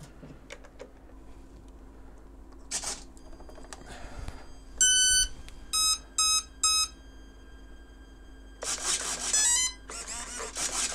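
Electric RC plane's speed controller sounding its power-up beeps through the motor as the battery is connected: a short noise burst about three seconds in, one long beep, three shorter lower beeps, then a quick rising run of stepped tones near the end. The three short beeps are typical of an ESC counting the cells of a three-cell pack.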